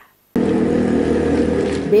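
Steady hum of a running engine, starting abruptly about a third of a second in after a brief silence.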